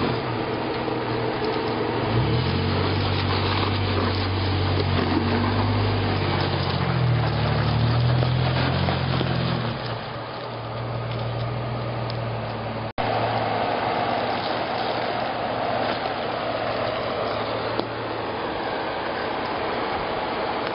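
Jeep Wrangler JK Unlimited engine crawling over rock, its revs rising and falling for the first ten seconds, then running steadier at lower revs. A brief dropout about 13 seconds in breaks the sound.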